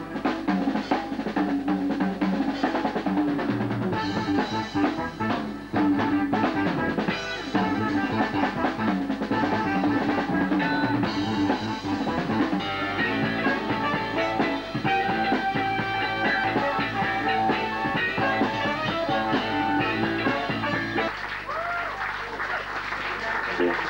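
Live jazz band playing, with electric bass guitar and drum kit, the drums struck sharply and often.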